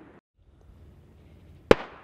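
A single gunshot: one sharp, loud crack near the end, over a faint hiss.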